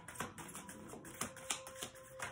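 Small oracle card deck being shuffled by hand overhand, the cards slapping and flicking against each other in a quick, uneven run of light clicks, a few a second.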